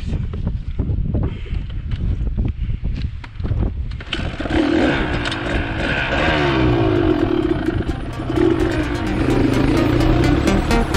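Dirt bike engine running low with knocks and wind on the microphone, then opening up about four seconds in and pulling away, its pitch rising as it accelerates.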